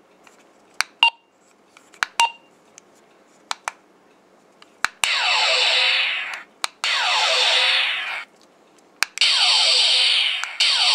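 Button clicks with short electronic beeps from a Diamond Select Star Trek II Type-1 hand phaser toy as its settings are stepped through, then from about five seconds in, three long electronic phaser-firing sound effects from its small speaker, each lasting over a second with short gaps between.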